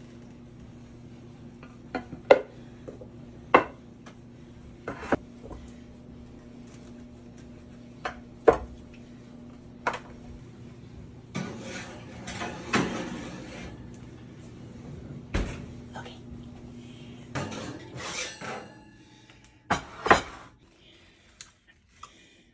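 Kitchen clatter: a ceramic baking dish knocked and set down several times, a longer rattling scrape about halfway through as it goes onto the oven rack, then metal utensil clicks against the dish near the end. A steady low hum runs underneath and stops a few seconds before the end.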